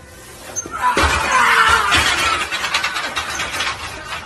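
A loud crash about a second in, followed by about three seconds of clattering and rattling, as a loaded barbell squat fails and the lifter collapses.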